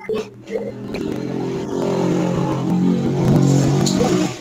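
A motor vehicle engine running steadily, growing louder over a few seconds and then dying away near the end.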